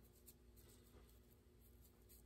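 Near silence, with faint soft strokes of a small paintbrush laying acrylic paint on a carved wooden bird.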